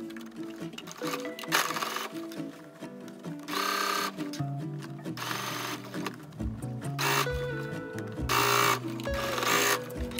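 Electric household sewing machine stitching fabric in about six short runs of under a second each, stopping and starting as the seam is guided, over background music.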